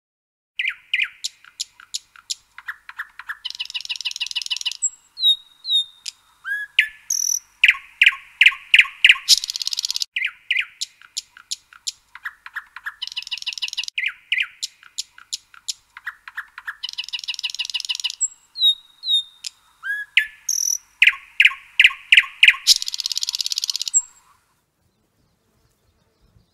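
Songbird chirps, fast trills and short whistles over a completely silent background, with the same phrases coming round several times. It starts about half a second in and stops shortly before the end.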